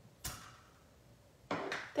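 A clear acrylic stamp block knocks down once onto cardstock as a leaf stamp is pressed. Another sudden knock follows about a second and a half in.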